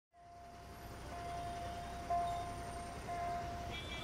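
Low city traffic rumble fading in from silence, under a steady high musical note that swells about once a second: the opening of background music.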